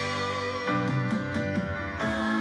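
Backing band playing a slow ballad accompaniment, with guitar to the fore and no singing, under steady held notes.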